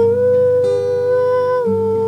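A woman's voice humming a wordless melody in long held notes, stepping down in pitch near the end, over fingerpicked acoustic guitar.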